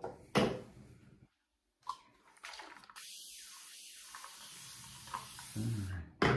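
Bathroom sink tap running in a steady stream for about two and a half seconds, starting about halfway in, after a couple of brief knocks.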